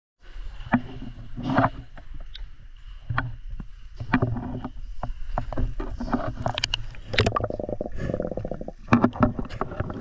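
Water sloshing and splashing against a small boat in a sea cave, with irregular knocks and a steady low rumble underneath.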